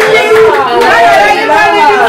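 Several people's voices talking loudly at once, overlapping into a crowded chatter.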